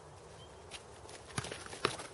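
Sparring with long practice swords: a few sharp knocks as the weapons strike, the loudest two in the second half, amid scuffing footsteps on a dirt track.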